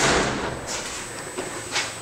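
A door knocks at the start, then a rush of noise fades over about half a second, leaving quiet room noise.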